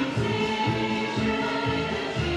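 Choir singing a held, chorale-like Christmas carol over instrumental backing.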